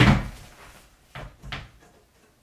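Wooden changing-table frame being tipped upright and set down on the floor: one loud thump at the start, then two lighter knocks just over a second in.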